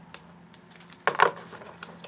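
Tarot card decks being gathered up and set down on a desk: a small click, then a louder brief clatter about a second in, followed by a few light taps.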